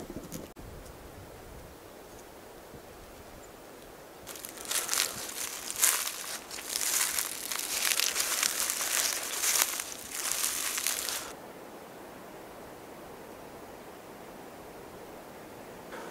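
Crackly rustling and crunching of dry leaves and brush in uneven spurts, starting about four seconds in and stopping abruptly about seven seconds later.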